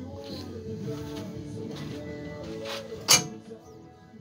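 Music playing in the background, with one sharp metal clank about three seconds in from the steel boat-trailer bow-step ladder being handled.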